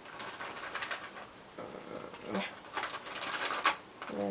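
Light rustling and clicking of small objects being handled by hand, with a brief low murmur of voice about two seconds in and a sharper click near the end.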